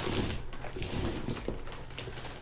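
Plastic mailer bag rustling and crinkling as cardboard tubes are slid out of its opened end, with two short hissy bursts of plastic in the first second.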